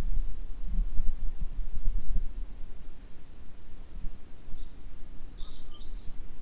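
Low, uneven rumble of wind on the microphone, with a small bird giving a few short, high chirps in the second half.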